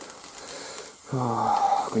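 A man's voice holding a drawn-out hesitation sound ("eh…") for about a second, starting a little after a second in, after a short pause with only a low steady hiss.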